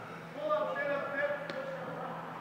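A person's voice: one drawn-out, high-pitched vocal sound lasting about a second and a half, with a sharp click near its end.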